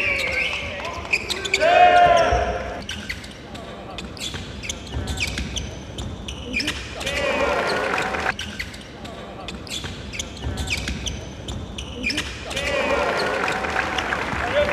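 Live game sound of a basketball being dribbled and bounced on a hardwood court, with voices calling out at times.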